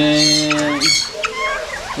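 A man's voice holding one long drawn-out vowel for most of the first second, a hesitation sound between words, then quieter short murmurs.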